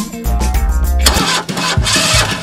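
Lamborghini Urus twin-turbo V8 being started: a low rumble, then a loud rush of engine noise from about a second in, over background music.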